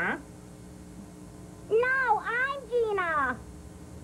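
A high-pitched Muppet monster's voice making three short wordless sounds with arching, finally falling pitch, starting about two seconds in, over a faint steady hum.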